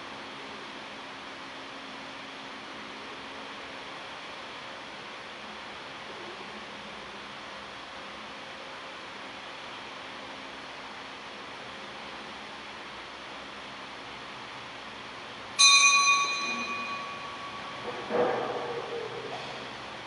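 Altar bell rung during the consecration at Mass: after a stretch of quiet church room tone, one bright ring sounds about three quarters of the way through and dies away over about a second and a half, followed near the end by a second, lower and duller ringing strike.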